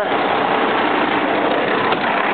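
Diesel engine of a 2005 Kenworth T300 truck idling steadily.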